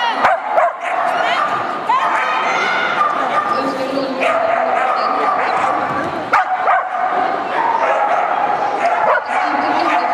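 Dogs barking and yipping with high whines over a continuous murmur of people talking, with a few sharp knocks near the start and about six seconds in.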